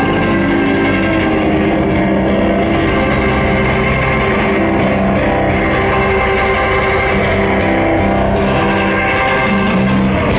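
Live rock band playing, led by several distorted electric guitars ringing and interlocking at a steady loud level.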